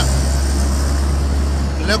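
Engine and road noise of a moving vehicle heard from inside it: a steady low hum under a continuous rushing haze.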